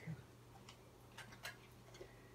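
Near silence: room tone with a steady low hum and a few faint, irregular clicks.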